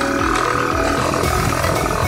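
Motorcycle engine running steadily while riding along a rough gravel dirt track.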